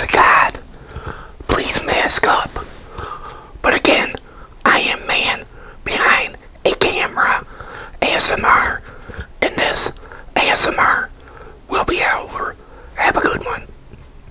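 A man whispering close to the microphone, in short phrases with brief pauses.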